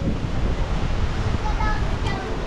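Wind buffeting the microphone: a steady rushing noise with a fluttering low rumble, with a faint voice in the background near the end.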